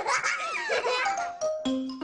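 Children laughing over light background music; about a second in the laughter gives way to a few held notes stepping down in pitch.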